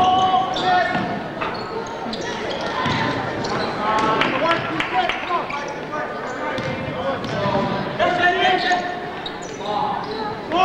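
Basketball being dribbled and bounced on a gym's hardwood court during live play, with repeated sharp bounces, short squeaky tones and players' and spectators' voices, echoing in a large gym.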